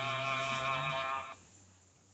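A man's voice chanting Qur'an recitation in Arabic, holding one long melodic note that rises slightly and stops about a second and a half in.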